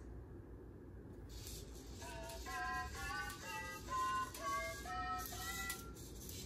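Anki Cozmo robot singing a short programmed song in its small synthesized voice: a quick run of short notes, about two or three a second, set as the scale C D E F G A B C in quarter notes. It starts about two seconds in.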